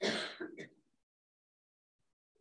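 A man clearing his throat once, a short rasp of about half a second at the very start.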